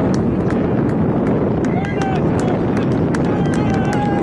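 Wind rumbling on the microphone, with short high shouts from voices on the rugby pitch about halfway through and again near the end.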